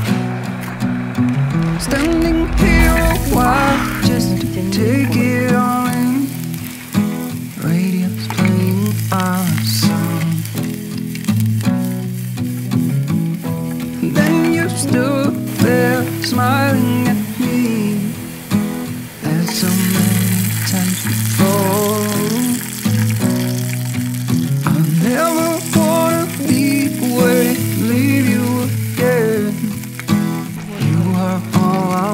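Background music with a melody over a steady bass line, with food sizzling in an aluminium mess tin on a camp stove underneath.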